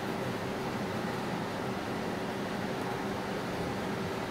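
Steady background noise: an even hiss with a faint constant hum, such as an air conditioner or fan running in a small room, with no other sound standing out.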